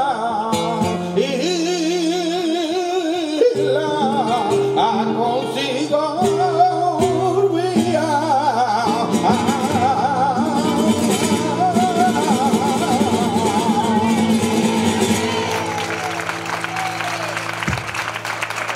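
Male flamenco singer (cantaor) singing a long, ornamented, wavering line over live flamenco guitar accompaniment. The voice stops about three-quarters of the way through, the guitar plays on, and applause starts near the end as the song finishes.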